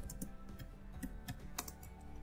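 Computer keyboard being typed on: a handful of separate keystroke clicks at an irregular pace.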